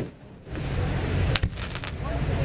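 Aerial firework shells bursting: a sharp bang at the start, then another crack about a second and a half in, followed by a short run of fainter crackles.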